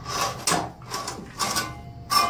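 Steel cable of a drum-type sewer snake being handled at the drain opening, making a few short scraping and clattering noises.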